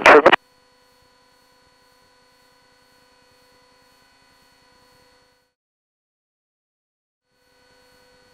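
Mostly near silence, after one spoken word at the very start. Underneath is a faint steady buzzing hum from the open cockpit radio or intercom channel, which cuts out about five and a half seconds in and comes back near the end.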